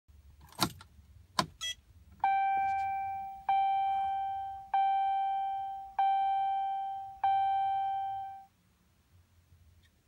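Two sharp clicks, then the pickup's dashboard warning chime dings five times, about a second and a quarter apart, each ding fading out, as the ignition is switched on.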